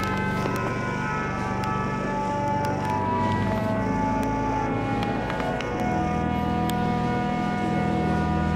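Church pipe organ playing slow, sustained chords over deep held bass notes, with the chords changing about three seconds in and again near six seconds, in a large reverberant cathedral.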